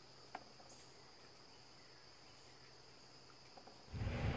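Near silence: room tone with a faint, steady high-pitched tone and a single soft click about a third of a second in.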